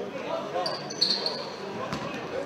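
Indoor futsal play in a sports hall: the ball being kicked and bouncing on the hard court floor, echoing, with players' and spectators' voices and a short high squeak about a second in.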